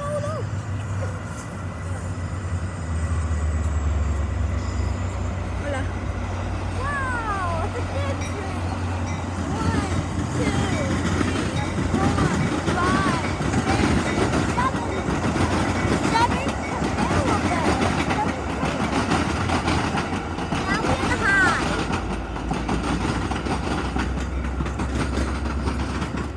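A Metra diesel commuter train of bilevel cars passing across the water: a steady low engine rumble, with the rattle of the cars on the track building through the middle. Short rising and falling chirp-like calls sound on and off over it.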